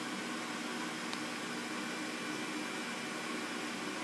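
Steady background hiss with a faint, even low hum, unchanging throughout.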